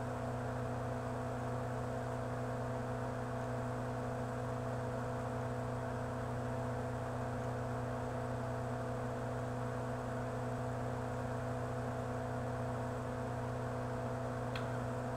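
Steady low electrical hum with a faint hiss, mains hum picked up in the recording.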